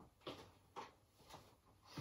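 Faint footsteps of a person running across a floor, four soft thuds about half a second apart.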